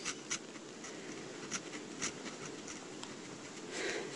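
A Livescribe smartpen writing on paper: faint pen-on-paper scratching with a few light ticks of the pen tip.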